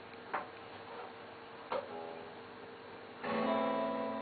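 Acoustic guitar: a few soft single notes and two sharp knocks, then near the end a strummed chord starts ringing as the playing begins.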